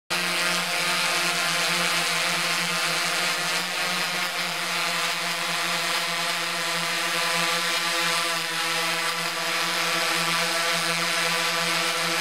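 Steady buzzing hum of a camera drone's electric motors and propellers, holding one pitch with many overtones and a layer of hiss.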